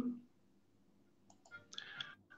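Near silence on a call line, then a few faint clicks and a brief faint voice in the last half second.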